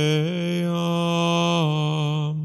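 One low voice chanting long held notes. The pitch steps up a little shortly after the start and drops back near the end.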